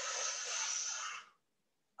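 A person's long audible exhale, a steady breathy rush lasting about a second and a half that stops abruptly.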